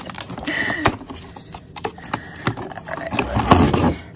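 Cardboard advent calendar door being pushed in and torn open along its perforations: a run of small cracks and scraping cardboard rustles, louder near the end as the door comes free.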